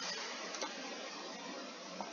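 Steady background hiss from a poor microphone, with no other distinct sound.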